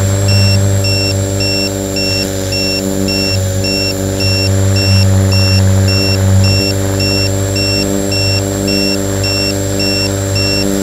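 Multirotor drone's electric motors and propellers humming steadily while it descends, with an electronic beeper giving a high double-toned beep about three times a second throughout.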